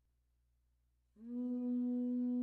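Alto saxophone coming in about a second in with a single long, steady held note after near silence.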